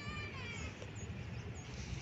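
A single drawn-out meow-like animal call, falling in pitch as it ends about half a second in, over a steady low background rumble.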